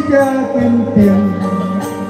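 A man singing into a microphone over amplified backing music, holding long notes that step up and down in pitch.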